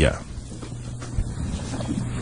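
A pause in a man's speech: his last word trails off at the start, then only a faint, steady low hum of background noise.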